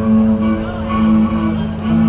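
Live traditional Welsh folk music: an acoustic guitar with a melody instrument playing sustained notes over a steady low drone.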